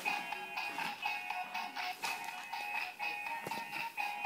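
Talking Princess Cadance pony toy playing a tinny electronic tune through its small speaker, with small clicks, while its wings move and light up.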